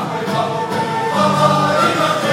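Live Serbian folk ensemble playing a circle-dance (oro) tune, with voices singing over bowed strings, accordion and double bass; a low note is held through the second half.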